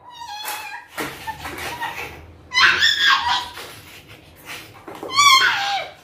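A toddler's high-pitched, whiny vocal sounds: one short call about halfway through and another near the end.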